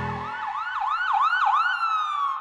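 Ambulance siren sound effect: a fast rising-and-falling wail, about three cycles a second, that winds down into one long falling tone near the end. The backing music drops out just as the siren begins.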